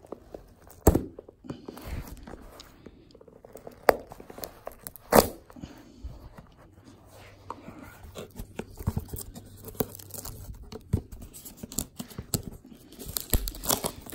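Clear plastic shrink wrap being torn and crinkled off a cardboard trading card box, with handling rustles and a few sharp knocks of the box.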